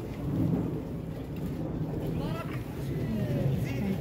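Low rumbling handling noise as the phone brushes against hanging clothes, with people talking faintly in the background.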